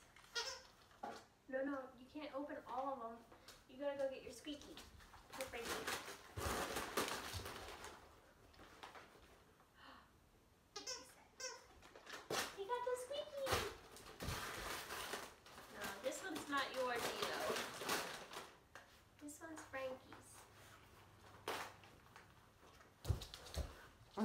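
Wrapping paper crinkling and tearing in several bursts as a dog pulls at a present, with short voice sounds in between.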